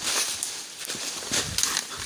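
Footsteps and rustling of leaves and branches in forest undergrowth, with a few sharper crackles and scuffs.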